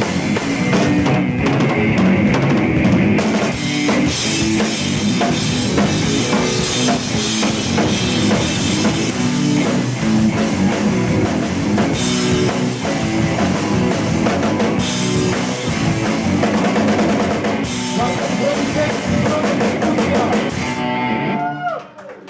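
Live rock band jamming, with a drum kit, electric guitar and bass. The playing stops just before the end.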